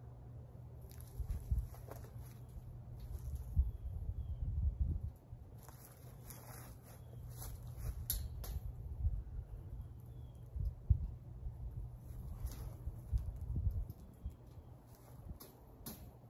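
Scattered small metallic clicks and scrapes of fence wire being worked by hand at a steel T-post, over an irregular low rumble.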